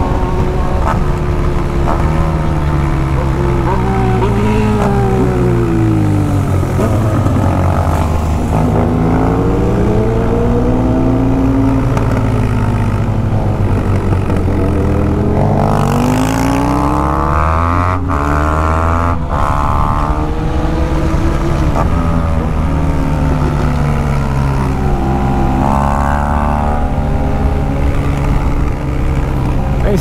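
BMW R1200 GS Adventure's boxer-twin engine under way with wind noise, its pitch falling and rising several times as the throttle is rolled off and opened again.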